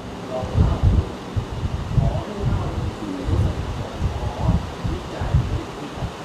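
Irregular low puffs and thumps on the microphone, roughly one a second, with faint murmuring voice in the background.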